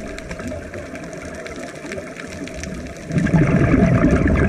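Muffled underwater sound picked up through a GoPro's waterproof housing: a scuba diver's regulator breathing and bubbles, with a louder rush of exhaled bubbles starting about three seconds in.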